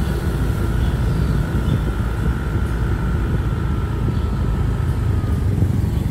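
A road vehicle driving along at a steady pace: an even low rumble of engine and road noise, with a faint thin whine above it.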